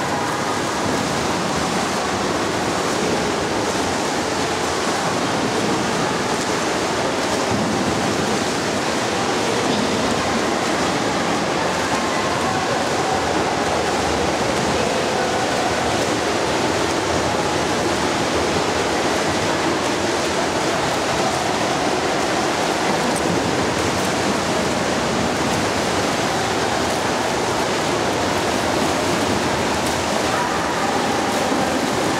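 Continuous splashing of swimmers swimming butterfly in an indoor pool, heard as a steady rushing wash of water without distinct separate strokes.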